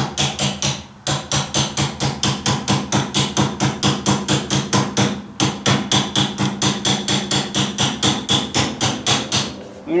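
Ratchet wrench clicking in an even run of about five clicks a second as it turns a nut on a tractor's tie rod end, with two short pauses, about a second in and about halfway through.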